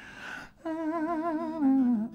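A voice humming a held note with vibrato after a breath, the pitch stepping down near the end.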